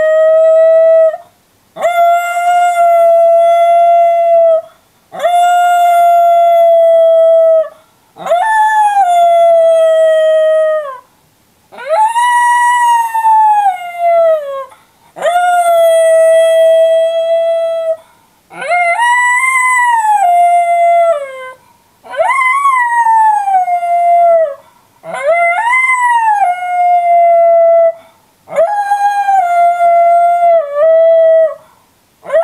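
Miniature schnauzer howling in its crate: about ten long howls one after another with short breaths between, some held on one pitch and some rising then falling away. It is the howling the dog took up when left home alone in its crate.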